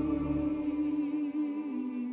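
Slow worship music with one long held note from the singers; the low bass drops away about a second in.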